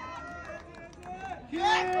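Background chatter from an outdoor crowd. About one and a half seconds in, a loud, drawn-out shouted call cuts in, heard as "ten".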